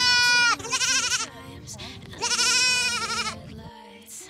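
Young Pashmina goat kid bleating twice: a high, quavering bleat in the first second and a second one about two seconds in.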